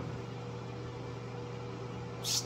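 Steady low mechanical hum with a faint hiss, even throughout.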